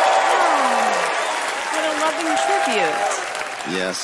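Studio audience applauding, with shouted cheers over the clapping. The applause eases near the end as a man starts speaking.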